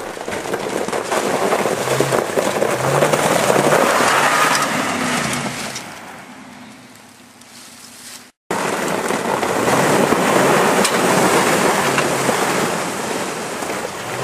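Ford Raptor pickup driving along a snowy trail: the engine rises and falls in pitch under a heavy, steady rushing noise. The sound fades a little past halfway and breaks off for an instant before the rushing returns.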